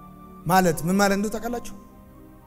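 A man preaching into a microphone in Amharic, a short phrase after a pause, over a soft held chord of background music that sounds steadily throughout.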